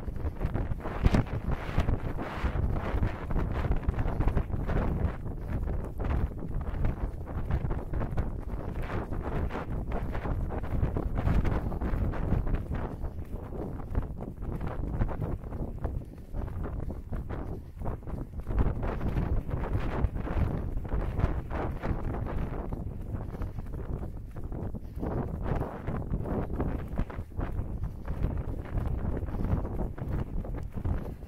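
Wind buffeting the microphone of a camera carried by a runner, with the regular footfalls of the runner on tarmac mixed in.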